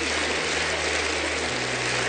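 Studio audience applauding over a low, held music underscore whose bass note shifts about one and a half seconds in.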